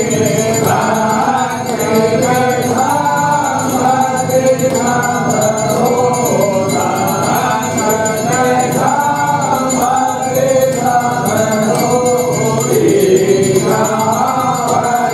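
A group of voices singing a Hindu devotional aarti hymn in a continuous melodic chant.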